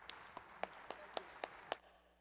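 Hand claps, seven even strokes at about four a second, stopping shortly before the end.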